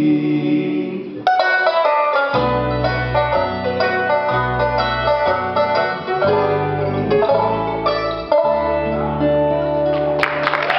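Bluegrass band playing the close of a song: a held sung harmony chord for about the first second, then banjo rolls, flat-picked acoustic guitar, mandolin and bass come in sharply and play the closing instrumental run.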